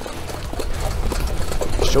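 Rumble of a harness horse and sulky moving along a dirt track: wind buffeting a microphone mounted on the sulky, with uneven clatter from the wheels and hooves.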